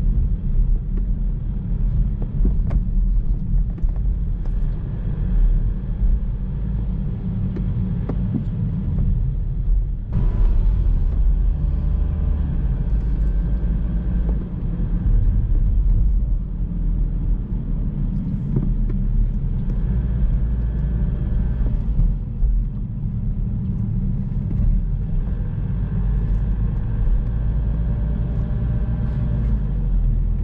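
Car driving, heard from the car: a steady low road rumble, with a brief hiss about ten seconds in.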